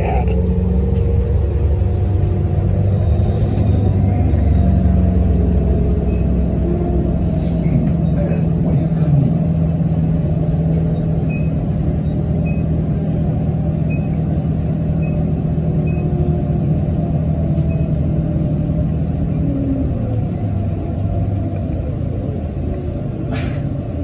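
Articulated city bus under way, heard from inside: a continuous low rumble, with a steady drone that sets in about four seconds in and drops away around twenty seconds. A sharp hiss or clunk comes near the end.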